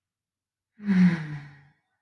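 Speech only: a woman's voice saying a single drawn-out "Good" about a second in, its pitch falling.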